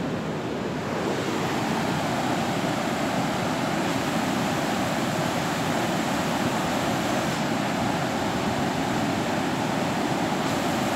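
Creek in flood: fast muddy floodwater rushing across a road and churning into whitewater beside it, a steady loud rush of water that gets a little louder about a second in.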